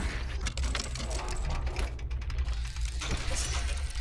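Sound-design sting for an animated logo intro: rapid glitchy mechanical clicking and ticking, like gears and ratchets, over a steady low bass hum.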